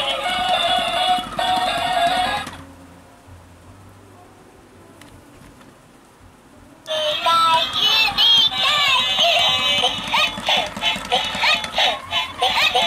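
Electronic tune from a Pikachu plush toy's small built-in speaker, cutting off about two and a half seconds in. After a few seconds of quiet, the toy starts up again about seven seconds in with quick squeaky voice sounds that slide up and down in pitch.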